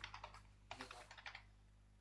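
Faint computer keyboard typing: a short run of soft key clicks that stops about a second and a half in.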